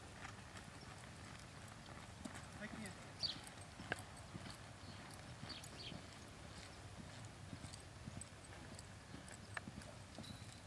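Faint hoofbeats of a two-year-old sorrel filly moving on soft arena dirt, with a few sharper knocks.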